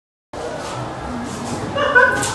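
Dead silence, then classroom room noise cuts in abruptly about a third of a second in: a steady hiss with faint murmuring, and a short pitched sound near the end.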